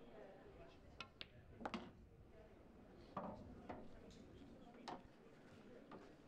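Near silence with a handful of faint, short clicks and knocks spread through it, over a low room hum.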